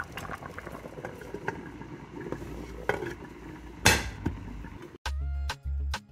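A pot of fish soup bubbling on the stove, with small pops and one sharp clink about four seconds in. Afrobeat music with a heavy regular beat starts about a second before the end.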